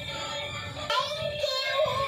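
Battery-powered light-up toy bus playing its built-in electronic song: a synthesized sung melody with music.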